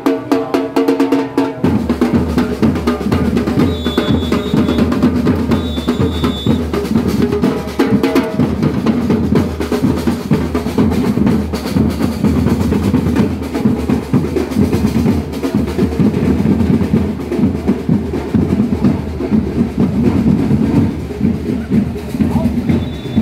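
Samba drum ensemble playing a fast, dense groove on surdo bass drums and snare drums. The low bass drums come in about two seconds in.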